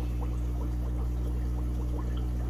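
Water trickling faintly in an aquarium over a steady low hum.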